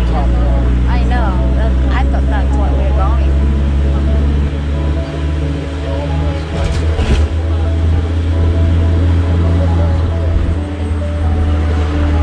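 Steady low rumble of a tour bus's engine and road noise, heard from a passenger seat at the open side of the bus, with faint background music and voices over it.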